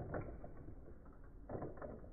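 Plastic clicking and rattling of Akedo battle-toy mechanisms as the figures' punching arms are worked: a short burst of clicks just after the start and another about a second and a half in.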